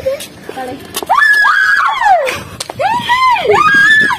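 Girls shrieking and yelling in play: a run of high-pitched cries that rise and fall, starting about a second in and following one after another.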